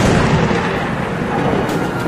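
Slot game's thunder-like boom sound effect marking the award of 15 free spins: a loud hit right at the start with a long, low tail.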